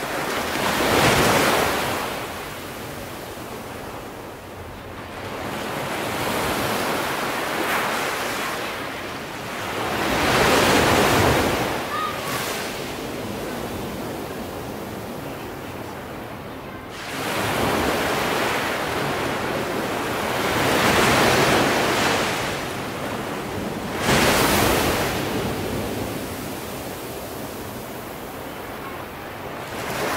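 Ocean surf breaking, loud rushes of water that swell and fade every four to six seconds, with a lower steady wash between the breakers.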